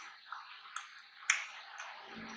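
Close-miked mouth chewing McDonald's french fries: about four short, sharp wet clicks in two seconds, the loudest a little past the middle, over a steady hiss.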